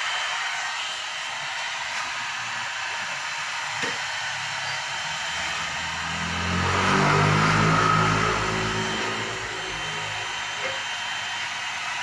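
Handheld electric heat gun blowing a steady hiss of hot air onto freshly printed ink, flash-drying one of three coats of screen-printing ink. A low drone swells and fades in the middle.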